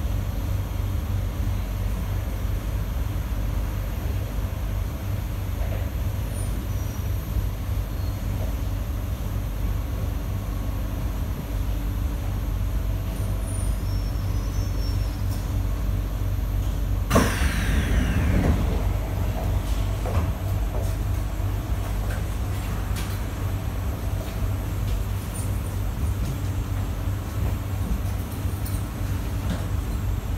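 Running noise inside a Kawasaki & CSR Sifang C151A metro train carriage: a steady low rumble. About halfway there is a sudden loud clatter, then a whine that falls in pitch over a second or so.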